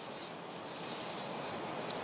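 Soft, steady rustle of paper being handled.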